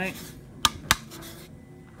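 Two sharp clicks about a quarter second apart as the bamboo container with its metal band is handled: hard object on hard object.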